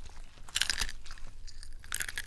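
Crunchy chewing: two short bouts of crisp crunches, the first about half a second in and the second near the end, over a low steady hum.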